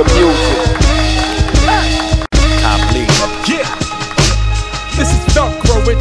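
Opening of a hip hop track: a beat with heavy bass and regular drum hits under sampled melodic fragments. The sound cuts out for a split second a little past two seconds in.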